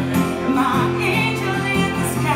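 Live band performance: a woman singing a wavering melodic line over acoustic guitar and band accompaniment.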